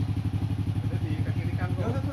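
Honda Supra Fit 110cc four-stroke single-cylinder engine of a homemade reverse trike idling with a steady, even pulse.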